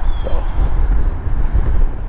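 Steady low rumble of highway traffic passing beneath a pedestrian bridge, with wind buffeting the microphone.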